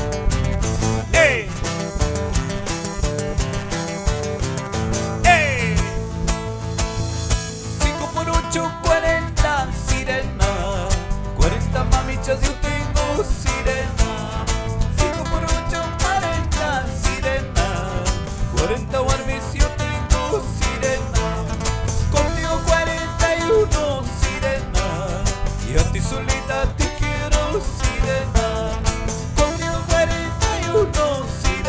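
Live Andean carnaval music, Ayacucho style, played at a steady dancing beat on nylon-string acoustic-electric guitars over a bass guitar, with a man singing into the microphone. Two brief falling high glides sound in the first few seconds.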